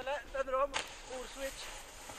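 Faint voices talking. About a third of the way in, a steady hiss starts suddenly.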